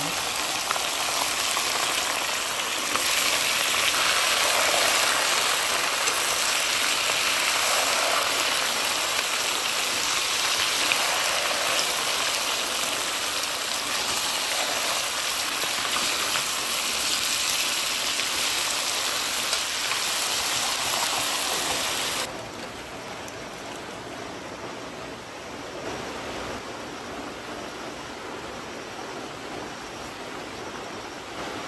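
A steady hissing noise with no clear pattern, which drops abruptly to a quieter hiss about two-thirds of the way through.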